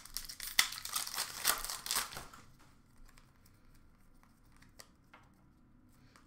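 Plastic wrapper of a hockey card pack being torn open and crinkled for about two seconds, then only a few faint ticks of cards being handled.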